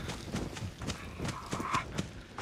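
Sound from the TV episode playing: a run of irregular light knocks and crackles, with a brief hiss about three-quarters of the way in.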